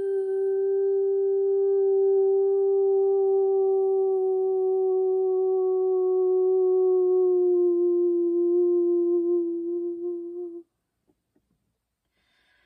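A voice holding one long hummed note for about ten seconds, its pitch sagging slightly in the second half before it stops abruptly.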